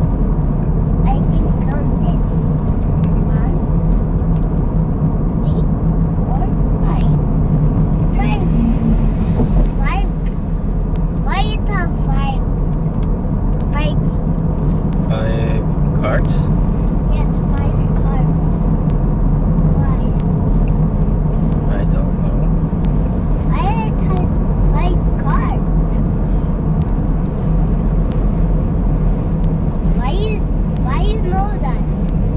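Steady low rumble of road and engine noise heard inside a car's cabin while cruising at expressway speed, with scattered quiet voices on top.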